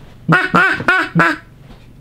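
Wooden duck call blown in four short quacks over about a second, each note rising and falling in pitch.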